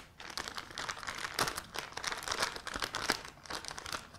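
Clear plastic decorating bag crinkling as hands fold its top back into a cuff: a run of small, irregular crackles.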